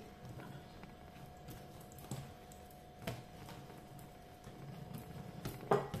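Hands pressing and patting soft bread dough flat on a wooden tabletop: a few faint, soft taps, over a faint steady hum.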